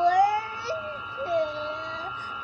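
A cat crying in long, drawn-out meows, two or three calls with wavering pitch: distress calls of a cat looking for its missing family.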